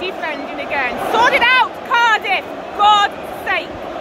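Football stadium crowd murmur, with short, high-pitched voices shouting out about once a second.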